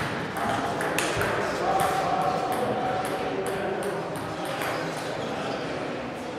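Table tennis ball clicking off bats and table in a rally, a run of sharp, irregular taps in a large hall, with voices around.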